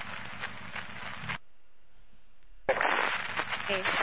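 Police radio scanner recording: the hiss of an open two-way radio transmission cuts off about a second and a half in. After a short quiet gap a new transmission keys up with hiss, and a voice says "okay" near the end.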